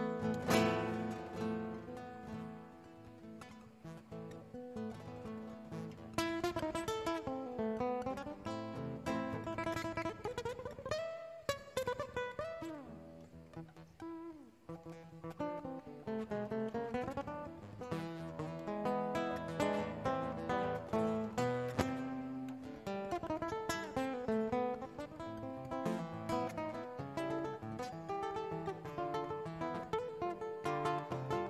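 Solo nylon-string classical guitar played fingerstyle. A loud chord rings out at the start, followed by continuous plucked melody and chords.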